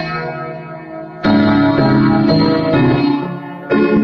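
Piano solo playing sustained chords, with new chords struck about a second in and again near the end.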